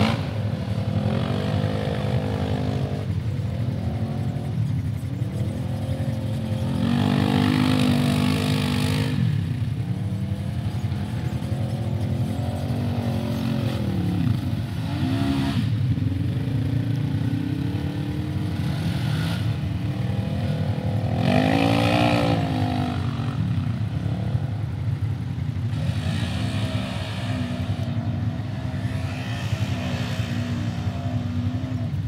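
Side-by-side UTV engines revving up and down over and over as the machines spin and slide through mud, with louder surges about seven and about twenty-one seconds in.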